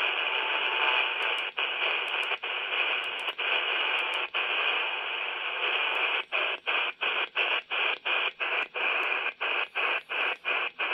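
Hiss from a Quansheng UV-K6 handheld's speaker, receiving in upper sideband on the CB band with no station heard. The hiss cuts out briefly each time the frequency steps: now and then at first, then about three times a second from about six seconds in.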